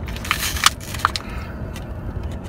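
Stiff clear plastic clamshell packaging crackling and clicking as it is twisted and pried open by hand, with a sharp crack about two-thirds of a second in. The crackling thins out after about a second.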